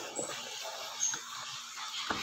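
Faint rustling and light clicks of a hand moving through raw shrimp in a plastic basin.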